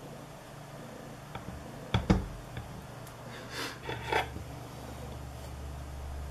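A large kitchen knife cutting a chocolate-glazed cake on a glass cake stand: two sharp knocks close together about two seconds in, then softer short scraping sounds, over a faint low hum.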